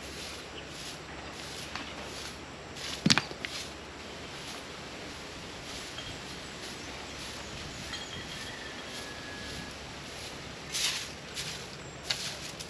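A broom sweeping dirt ground in short, brisk strokes, about two a second, louder near the end. A single sharp knock sounds about three seconds in.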